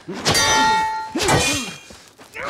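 Two metallic sword clangs, the first about a quarter second in and the second just after a second. Each strike rings on with bright, lingering tones.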